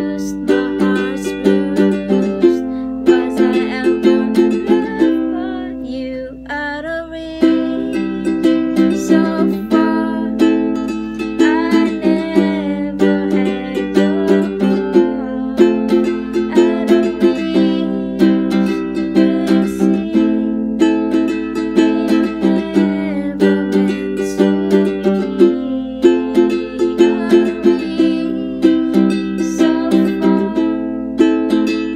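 Ukulele strummed in a steady rhythm, chord after chord, with a woman's voice softly singing along in places. The strumming eases off briefly about six seconds in.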